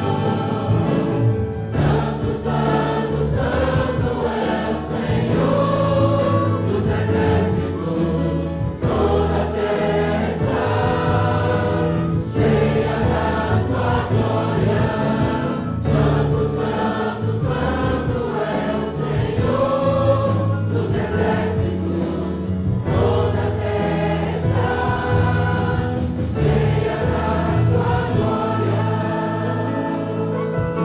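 A group of voices singing a Portuguese-language hymn together, led by singers on microphones, over keyboard accompaniment.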